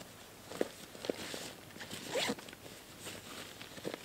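Short, irregular rustles and scrapes of camping gear being handled at a tent doorway, loudest about two seconds in.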